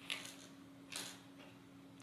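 Tiny metal bolts and nuts tipped out of a small plastic bag, clicking and rattling onto a tabletop: one short clatter at the start and another about a second in.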